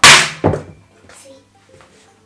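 A magnetic fraction piece pulled off a whiteboard: a loud, sudden knock and rub against the board, then a second, smaller knock about half a second later.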